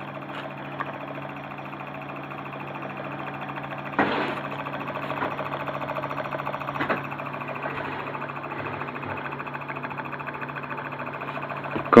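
Homemade pulse motor running on its own: a heavy disc rotor spinning on its shaft, driven by two coils switched by contact breakers, giving a steady dense buzz over a low hum. It grows a little louder over the first few seconds, with a brief louder bump about four seconds in.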